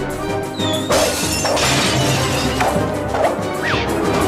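Cartoon background music with crashing and shattering sound effects, loudest about one to two seconds in.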